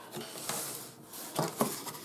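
Cardboard shipping box being handled, its flaps rubbing and scraping, with a couple of short knocks a little past halfway.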